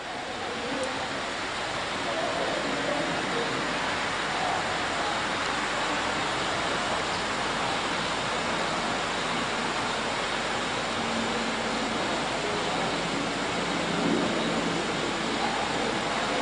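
A steady, even rushing noise that swells up over the first two seconds and then holds.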